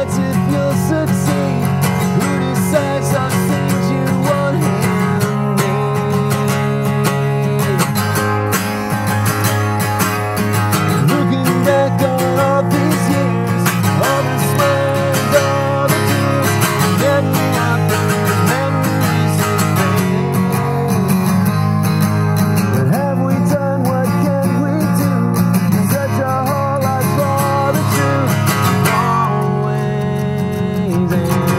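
Acoustic guitar strummed steadily, with a man singing over it.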